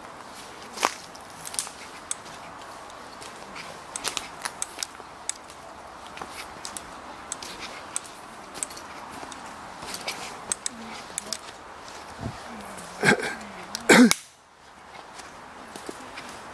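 Footsteps crunching over twigs and undergrowth on a woodland path, an irregular run of sharp snaps and crackles over a steady background hiss. Near the end come two louder sounds about a second apart, then the sound drops out briefly.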